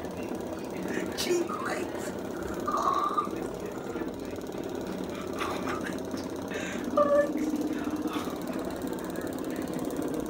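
Hoverboard vibrating under a standing rider: a steady, rapid buzzing rattle from the self-balancing board's motors, with the board shaking the rider's legs.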